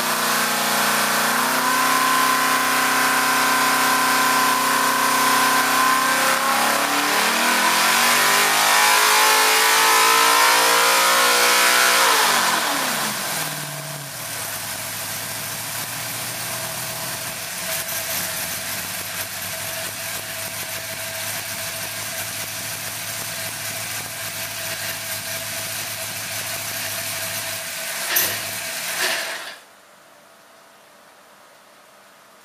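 598-cubic-inch big-block V8 racing engine running on an engine dynamometer. It is held at high revs, climbs further, then drops sharply back to a steady idle about twelve seconds in. Near the end come two sharp cracks, and then the engine shuts off.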